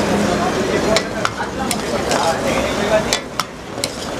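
Metal ladle stirring gravy in a steel pan over a gas flame, the gravy sizzling, with the ladle clinking sharply against the pan several times.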